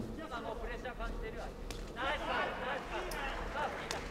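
A couple of sharp smacks of kickboxing strikes landing, over faint voices shouting in the arena.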